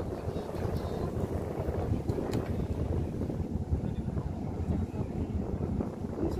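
Wind buffeting the microphone: a heavy, uneven low rumble throughout, with a brief click about two and a half seconds in.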